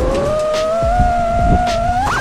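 FPV drone's motors whining in flight, one steady tone that climbs slowly in pitch as the throttle comes up, over a rough low rumble.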